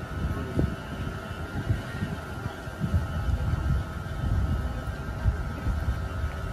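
Outdoor ambience: a low, uneven rumble with a faint steady high tone running above it.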